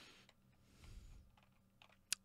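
Near silence: room tone, with a few faint soft clicks near the end.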